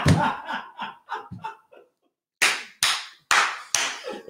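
A woman's laughter trailing off, then after a short pause four loud, sharp hand claps about half a second apart.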